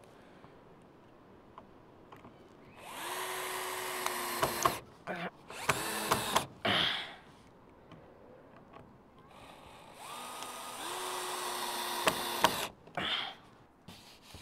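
Cordless drill-driver run twice into a wooden roof batten, each run about two to three seconds long, the motor's pitch rising and then holding steady, followed by a few short trigger bursts as the batten is fixed back down.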